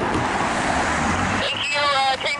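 Steady rushing hiss of a scanner radio between two transmissions, over a low rumble; a radio voice cuts in near the end.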